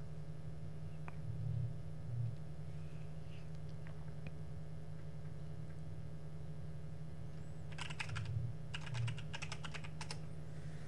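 Computer keyboard typing: a quick run of keystrokes near the end, with a few scattered clicks earlier, over a steady low hum.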